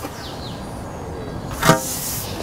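Handling noise from an aluminium glass retainer bar being positioned along the edge of a glass roof-lantern unit: a faint steady rustle with a brief scrape. A short vocal sound comes near the end.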